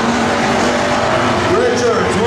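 A pack of hobby stock race cars running on a dirt oval: loud engines, with engine notes that rise and fall as the cars lap, and one note climbing near the end.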